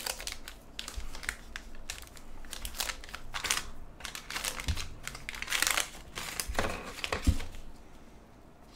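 Wax-paper wrapper of a 1984 Topps baseball pack crinkling and tearing as gloved hands open it, in irregular rustles, loudest a little past halfway.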